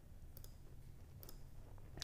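Soft computer mouse clicks, a pair about half a second in and another pair just past a second, as pieces of a design are clicked away on screen.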